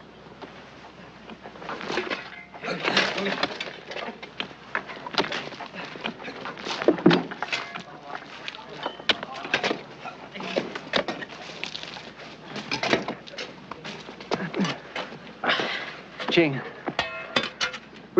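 Repeated knocks and scrapes of digging tools in earth and wood as a trench is dug and stakes are set, starting about two seconds in, with indistinct voices calling now and then.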